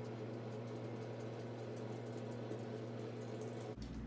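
Steady low hum and hiss of room tone, with faint, quick light ticks of a felt-tip marker tapping short strokes onto paper. The background changes abruptly shortly before the end.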